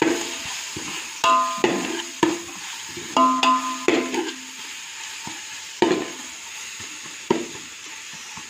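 Onions and ginger-garlic paste sizzling in oil in a metal pot while a perforated metal spatula stirs and scrapes, knocking against the pot again and again. The hardest knocks, about a second in and again around three to four seconds in, leave the pot ringing briefly.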